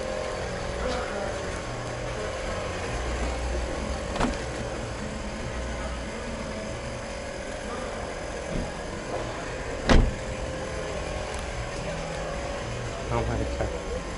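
Steady open-air background noise with one loud, sharp knock about ten seconds in, a car door, here the 2011 Toyota Camry's, being shut. Faint voices come in near the end.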